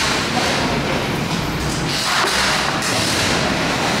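A person slurping and chewing thick noodles, over a loud, steady rumbling background noise.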